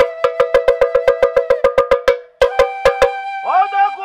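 A metal gong or bell struck rapidly, about eight strikes a second, each ringing at the same pitch. The strikes pause briefly after two seconds, then a few more follow. Near the end a pitched sound slides upward.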